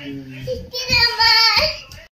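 A toddler's high-pitched voice in sing-song calls that rise and fall in pitch, loudest about a second in.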